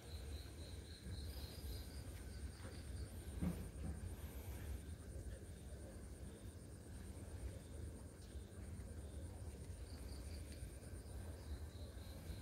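Faint outdoor ambience: insects chirping in a steady, evenly pulsing high tone over a low rumble, with one small knock about three and a half seconds in.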